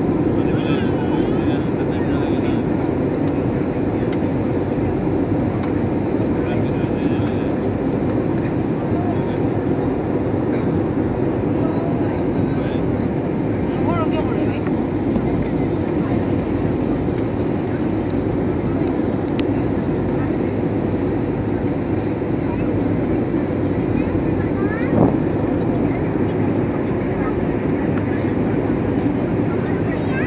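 Steady turbofan engine and airflow noise inside the cabin of an IndiGo Airbus A320, heard from a window seat beside the wing, with one brief knock late on.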